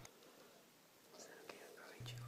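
Near silence: faint room tone, with a few soft clicks in the second half.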